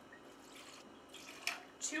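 Whipped cream vodka poured from a bottle for a shot, a faint trickle of liquid, with a light tap about a second and a half in.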